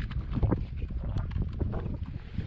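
Dry desert brush crackling and rustling, with plant stems snapping, as hands pick through a shrub: irregular quick clicks and crackles. A low wind rumble on the microphone runs underneath.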